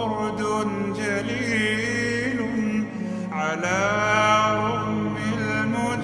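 Slowed-down, heavily reverberant Arabic vocal nasheed: a male voice sings long, gliding held notes over a low steady vocal drone. One phrase ends just before the halfway point and a new rising phrase begins.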